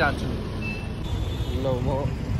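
Roadside traffic: a steady low rumble of motorcycles and other vehicles passing, with a short high beep a little under a second in.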